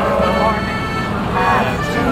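Small group singing with an accordion playing along, held accordion notes under the voices, and city traffic rumbling underneath.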